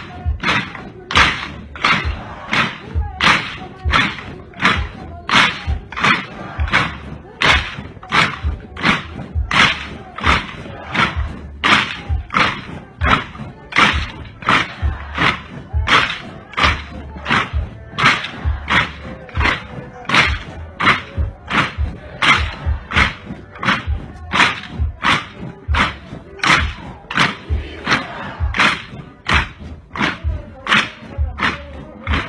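A large uniformed formation marching in step, its footfalls or stamps landing together as sharp, evenly spaced thuds a little under two a second.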